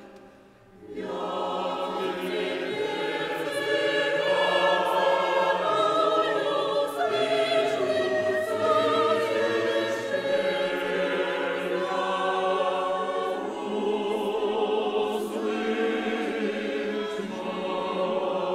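Women's church choir singing a hymn under a conductor. The singing breaks off for about the first second, then resumes and grows fuller a few seconds in.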